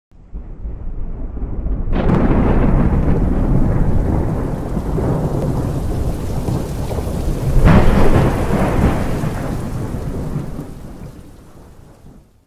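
Thunderstorm: rain with rolling thunder, a sharp clap about two seconds in and a second, louder clap past the middle, the rumble then fading away toward the end.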